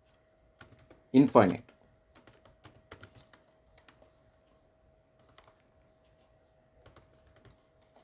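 Typing on a computer keyboard: soft, irregular keystrokes in short runs. One short word is spoken about a second in.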